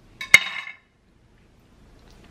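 A metal knife set down on a plate, with one sharp clink and a short ring about a third of a second in.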